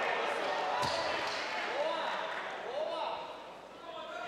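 Crowd in a large hall cheering and shouting, with a single thump about a second in; the noise dies down near the end.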